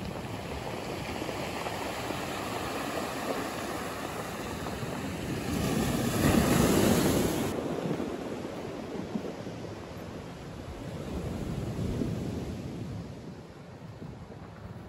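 Surf washing steadily on a rocky shore, swelling louder about six seconds in and again near twelve seconds.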